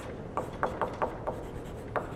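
Chalk writing on a blackboard: a series of short taps and scratches, about six strokes, as a word is chalked out.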